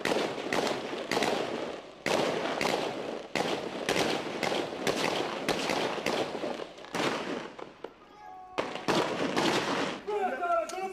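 Gunfire in a shootout: many shots in rapid succession, each with an echoing tail, keeping up for most of the stretch, with a short lull about eight seconds in before more shots.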